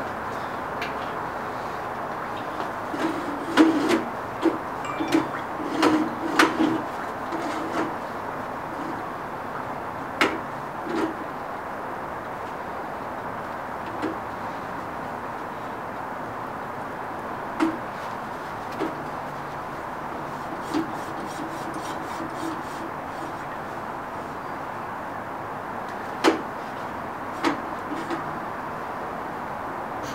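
Scattered short knocks and clanks of hands handling the welded steel go-kart frame and rear axle, most of them in a cluster in the first several seconds, then single ones further apart, over a steady background hiss.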